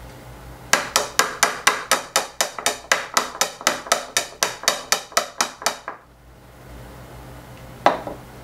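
Glass coffee-maker carafe, held upside down, knocked rapidly and evenly against a bowl about twenty times, four or five knocks a second, to shake cooked sausage out of it. One more single knock near the end as the carafe is set down on the table.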